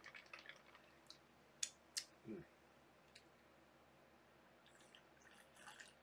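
Near silence, broken by two faint sharp clicks about one and a half and two seconds in and a short, soft hummed 'mm'.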